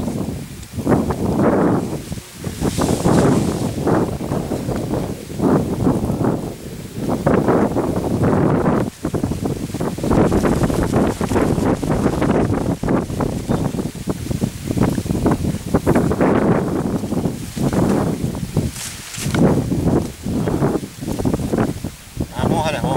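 Wind buffeting an outdoor microphone in uneven gusts, a rough rumbling rush that swells and drops every second or so, with leaves rustling.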